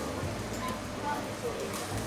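Indoor food-hall ambience: faint background voices and music over a low, steady hum, with no close sound standing out.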